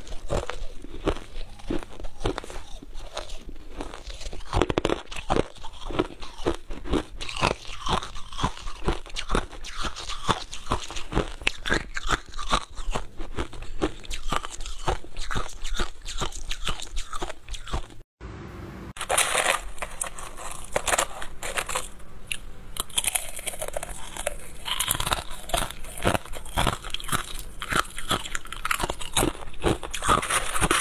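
Close-miked crunching and chewing of crushed ice, a rapid run of crisp crunches several times a second. About two-thirds of the way through, the sound breaks off for a moment and resumes brighter and denser.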